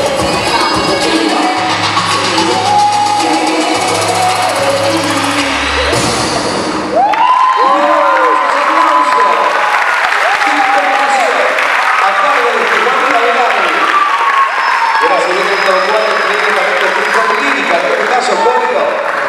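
A loud hip hop dance track with a heavy bass beat plays, then cuts off abruptly about seven seconds in. After that an audience cheers, whoops and applauds.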